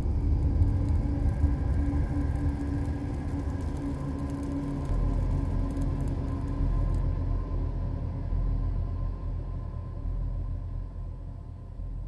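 A deep, sustained rumble from a TV channel ident's sound design, with a faint held tone over it, swelling at the start and fading out near the end.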